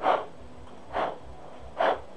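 A person sniffing hard through the nose three times, about a second apart.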